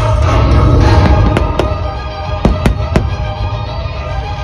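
Fireworks show music playing loudly, cut through by about five sharp firework bangs between one and a half and three seconds in.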